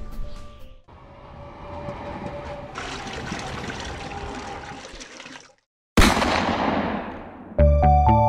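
Rain sound effect: a steady hiss of falling rain that swells fuller about three seconds in and cuts off suddenly, followed after a brief silence by a sudden loud noise burst that fades away over about a second and a half.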